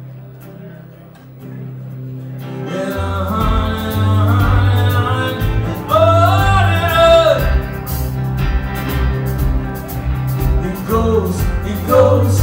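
Live country-rock band with electric guitars, bass and drums: quiet held chords at first, then the full band comes in about three seconds in with drums and a male voice singing.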